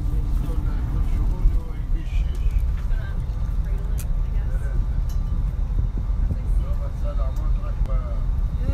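Steady low engine and road rumble inside a moving coach bus, with faint passenger chatter in the background and a couple of light clicks.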